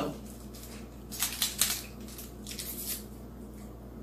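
Paper Sweet'N Low packet rustling and crackling as it is torn open, in two short bursts about a second apart.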